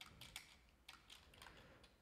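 Faint, irregular keystrokes on a computer keyboard, typing a few characters.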